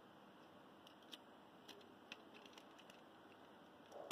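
Near silence with a few faint, light clicks as a small toy Volkswagen Beetle is handled and its opening door is worked.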